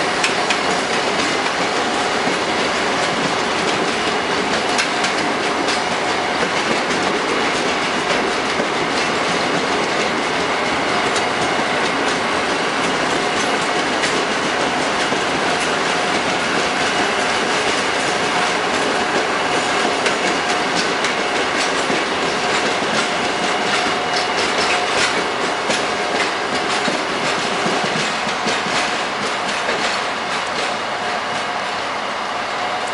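Passenger coaches of a departing train rolling past at low speed: a steady rumble of wheels with clickety-clack ticks over the rail joints and a steady high whine, easing off a little near the end as the last coach moves away.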